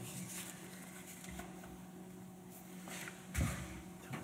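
Quiet handling sounds: soft neoprene lens-cover pieces being picked up and laid down on a desk, with a light thump about three and a half seconds in, over a faint steady hum.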